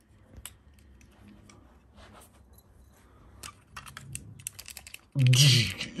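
Plastic joints and parts of a Transformers Barricade toy figure clicking as they are twisted and snapped into robot mode. The clicks are light and scattered at first and come thicker near the end. A voice starts about five seconds in.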